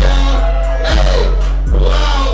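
Loud hip hop music played live: a beat of deep, sustained bass notes struck anew about every second, with a rapper's voice through a microphone over it.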